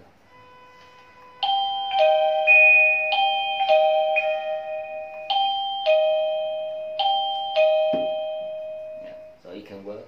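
Plug-in wireless doorbell chime receiver playing its electronic bell melody, about a dozen ringing notes in a repeating phrase, the last note fading out. It plays on being powered up, without the doorbell button being pressed.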